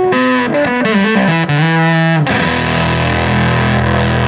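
Electric guitar through a Sehat Effectors Blown Face fuzz pedal with germanium OC47 transistors and a Fender Pro Junior tube amp, played with distortion. A quick run of single lead notes falling in pitch, with bends, gives way about halfway to a low, fuzzy sustained chord.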